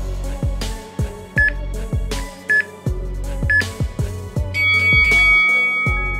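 Background music with a steady beat, over which an interval timer gives three short countdown beeps about a second apart, then a longer, louder tone marking the end of the work interval.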